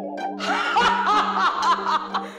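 A woman laughing in a quick run of short bursts that starts about half a second in, over background music with steady held tones.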